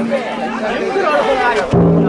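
Large taiko drum on a Banshu festival float struck once near the end, a deep hit that rings on as a steady hum; the ring of the previous stroke fades out at the start. Chattering voices of the bearers and crowd run underneath.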